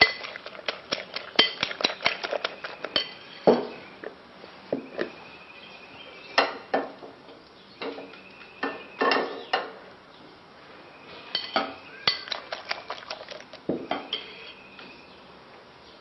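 Utensil beating raw eggs in a glass bowl, a quick run of clinks against the glass, then scattered clinks and knocks of cookware as the frying pan is handled on the stove.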